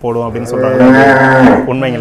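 A cow mooing once in the middle, a loud held call of about a second.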